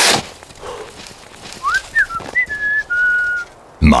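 A short whoosh, then, a little over a second and a half in, a short whistled phrase of a few clear notes that rise and then hold.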